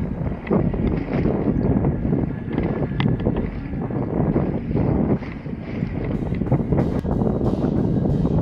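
Wind buffeting an action camera's microphone while a wingfoil board rides over the sea, with water rushing and splashing under the board. The noise is loud and gusty throughout.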